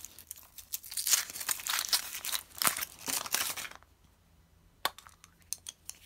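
Aluminium foil wrapper crinkling and tearing in quick bursts as it is peeled off a chocolate egg. After a brief quiet pause, a few sharp clicks near the end as the chocolate shell is cracked open around the plastic toy capsule.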